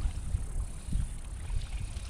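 Wind noise on the microphone, with a faint steady high whirr from a small spinning reel being wound in on a hooked fish.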